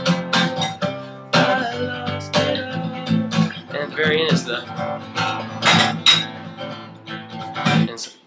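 Steel-string acoustic guitar strummed in a steady rhythm, playing the chorus progression as barre chords while the fretting hand shifts along the neck.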